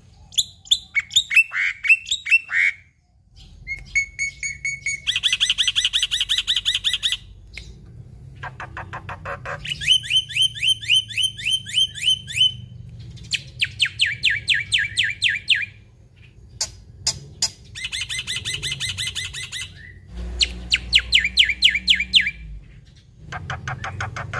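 Black-winged starling singing: a run of phrases of about two seconds each, every phrase a fast string of rapidly repeated notes, with short breaks between them.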